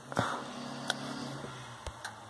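Light handling noise from a plastic toy train being turned over in the hands: three small clicks spread across the two seconds over a faint low hum.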